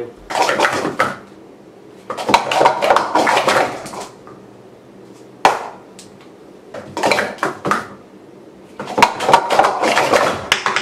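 Plastic speed-stacking cups clattering in rapid bursts of one to two seconds as three sets of three are stacked up into pyramids and back down (a 3-3-3), with a single sharp clack near the middle and short pauses between the bursts.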